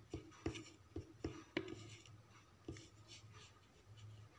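Faint soft taps, about six in the first three seconds, with light rubbing: fingertips pressing small glass stones onto a board.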